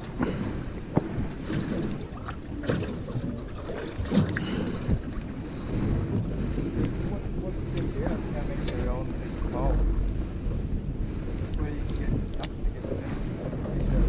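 Wind buffeting the microphone over water sounds around a small boat, with scattered small clicks and knocks.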